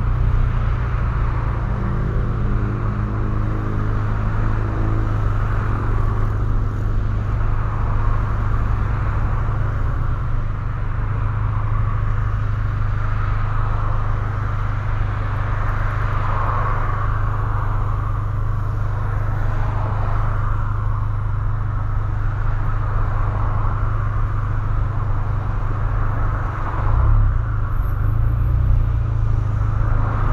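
Steady low rumble of a car heard from inside its cabin as it creeps forward in slow traffic, with no sharp events.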